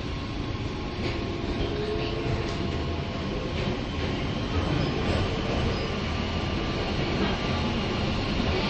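London Underground Waterloo & City line train running, heard from inside the carriage as a steady rumble with a faint whine that rises and falls briefly about a second in.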